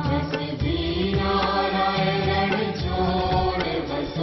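Devotional aarti chanting sung over music with percussion.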